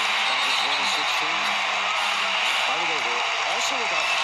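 Basketball arena crowd cheering: a steady roar of many voices, with individual shouts rising out of it.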